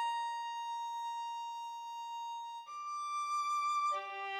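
Solo violin melody playing slow, long held notes: one sustained note, then a step up to a higher held note about two and a half seconds in.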